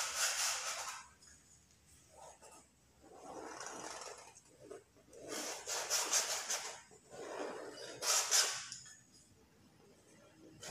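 Paintbrush rubbing and scraping in short strokes against canvas and a small paint cup, four rasping passes of about a second each with pauses between.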